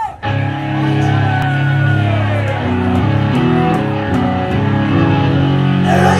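Live rock band starting a song: loud held chords that step slowly from one to the next, over a steady cymbal tick about twice a second.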